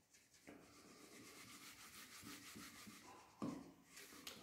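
Faint rubbing of a whiteboard being wiped clean by hand, marker writing erased in repeated strokes, slightly louder for a moment near the end.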